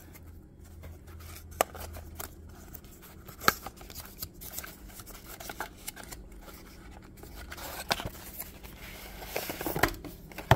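Cardboard and plastic product packaging being opened and handled on a workbench: scattered small clicks, taps and rustles, with a faint low hum underneath.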